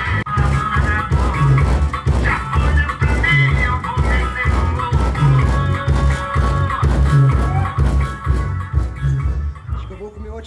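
Car sound system in a Chevrolet Celta, its open door fitted with a multi-woofer speaker box, playing a song loud with a heavy bass beat about twice a second. Near the end the beat suddenly drops, which the owner puts down to weak batteries.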